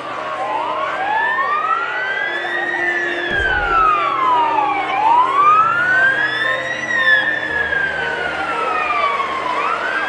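Fire engine sirens wailing: two sirens rise and fall slowly in pitch, out of step with each other, each sweep taking a few seconds. A low vehicle engine rumble runs underneath.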